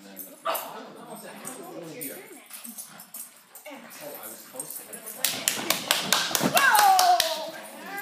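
A dog barking in a quick, excited run starting about five seconds in, followed by a longer call that falls in pitch, over people talking.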